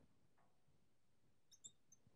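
Near silence, with a few faint, short squeaks of a marker on a glass lightboard near the end.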